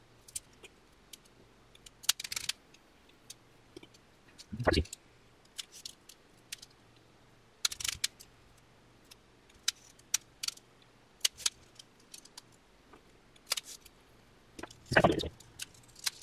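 Irregular light clicks, ticks and scrapes of hands laying thin aluminium coil wire back and forth across a glued film membrane stretched on a frame, with a few louder taps against the frame.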